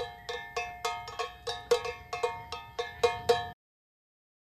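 Cowbell solo: a cowbell struck in a steady rhythm, about three to four strikes a second, each hit ringing briefly. It cuts off suddenly near the end.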